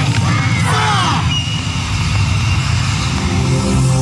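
Loud yosakoi dance music from a PA with a heavy, steady bass. In the first second or so, voices shout calls over the music.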